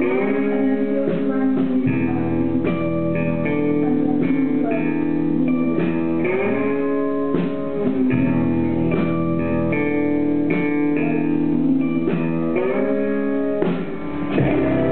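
Live rock band playing: electric guitars and a drum kit with a steady beat, and a woman's voice singing long gliding notes over them. The recording is dull and lacks treble.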